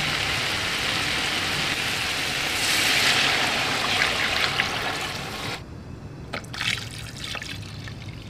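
Water poured from a steel jug into a large aluminium pot of mutton browned in hot ghee, running in as a steady rush. About five and a half seconds in it drops to a lighter trickle with small splashes. The water is the three litres added to the browned meat to start the broth.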